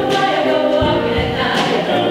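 Mixed choir of men's and women's voices singing held chords in harmony, with short low beats underneath.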